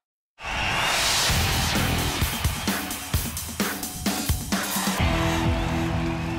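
Short electronic TV ident jingle: it cuts in sharply after a brief silence with a rushing swell, then a run of sharp percussive hits, and settles into held synth chords near the end.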